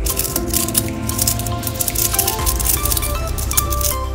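Background music with held notes, plus a rapid patter of light clicks during the first second or so, from small magnetic metal balls snapping and shifting against each other as a cube of them is squeezed out of shape by hand.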